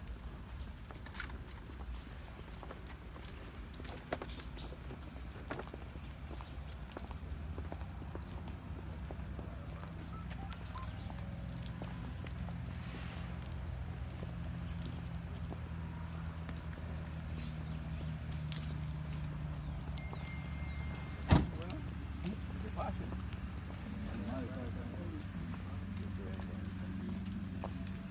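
Footsteps of several people walking on pavement, with low voices in the background and a low steady hum that comes up about a third of the way in. A single sharp knock sounds about three-quarters of the way through.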